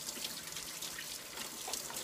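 Kitchen sink faucet running steadily while hands are washed under the stream.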